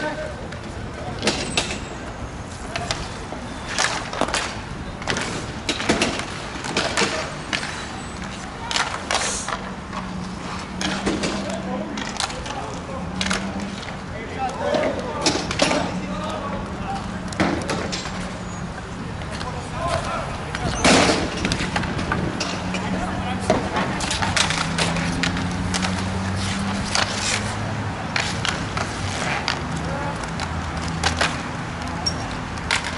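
Inline roller hockey in play: irregular sharp clacks and knocks of sticks and puck against the rink floor and boards, with skate wheels rolling on the surface. Voices call out in the background.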